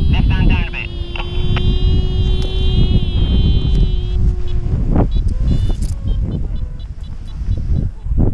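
Air rushing over the microphone of a paraglider pilot coming in to land, a heavy buffeting rumble, with a steady pitched tone held for about four seconds in the first half.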